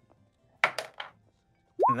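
A six-sided die being rolled: three quick, short clattering clicks a little over half a second in.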